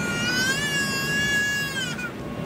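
A baby's single high-pitched squeal, held for nearly two seconds, rising slightly at the start and dropping away at the end, over the steady drone of an airliner cabin.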